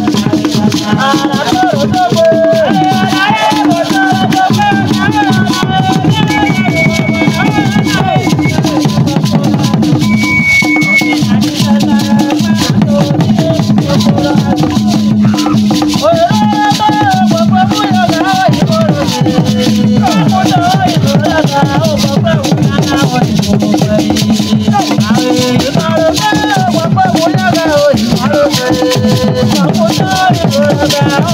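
Traditional Ewe drumming with shaken rattles keeping a steady dense pulse, under group singing.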